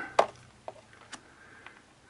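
Small plastic clicks as a wire is pushed into a 3M Scotchlok insulation-displacement splice connector: one sharp click, then three faint ticks about half a second apart.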